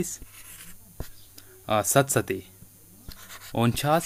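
A voice speaking two short bursts of words, with faint scratching of a stylus writing on a tablet screen in the gaps and a single sharp tap about a second in.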